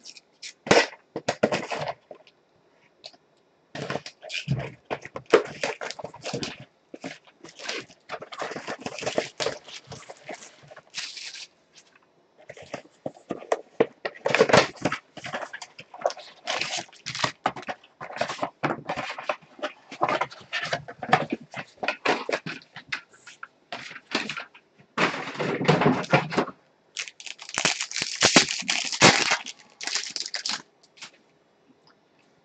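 Clear plastic shrink wrap crinkling and tearing as it is stripped off a cardboard box of trading-card packs, then the box being opened and the foil packs handled, a long run of irregular crackles, crinkles and rustles. The densest, hissing rustle comes near the end as a pack is handled.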